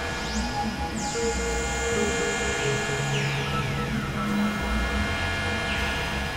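Experimental electronic drone music from synthesizers, a Novation Supernova II and a Korg microKORG XL: layered steady tones over a low rumble, with several falling pitch sweeps.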